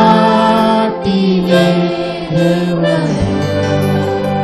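A Telugu Christian worship song performed live: a group of voices singing long held notes into microphones, with keyboard and electric guitar accompaniment.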